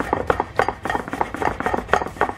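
A beet being shredded on a small hand-held kitchen grater: quick, repeated rasping strokes, several a second.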